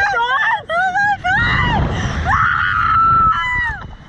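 A young woman screaming with thrill on a slingshot amusement ride. First comes a string of short high-pitched shrieks that rise and fall, then one long held scream just past the middle, and a last short falling cry near the end.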